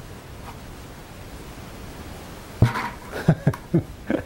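Quiet room tone, then about two and a half seconds in a loud thump followed by several sharp hollow knocks as plastic buckets are handled and set down on the floor.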